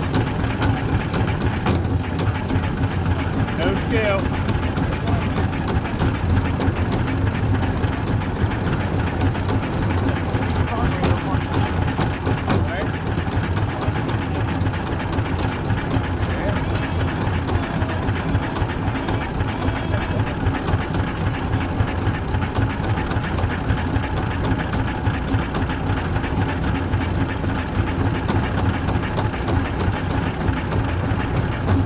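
Small race car's engine idling with a steady fast rattle while the car rolls slowly at low speed.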